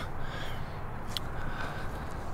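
Faint, harsh bird calls, a crow's caw by the sound of it, over a steady low outdoor background, with a small click about a second in.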